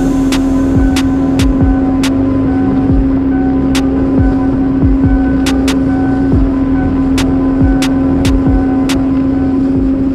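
A boat's outboard motor running steadily at speed, a loud even drone with wind on the microphone, under electronic background music with a beat.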